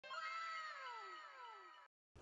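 A high, drawn-out meow-like call falling steadily in pitch, with a second falling call overlapping it, dubbed in as a sound effect. It cuts off suddenly near the end.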